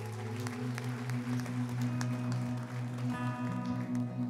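Clapping hands from a congregation over a sustained keyboard chord, with acoustic guitar coming back in about three seconds in.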